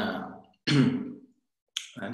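A man speaking Romanian in short fragments with pauses between them: a phrase trailing off, one short word with a sharp start about halfway in, then speech picking up again near the end.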